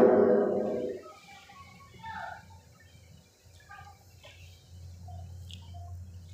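A man's chanting voice holds one long note and fades out about a second in. After that there is faint room sound with a low hum and a few faint, short chirps.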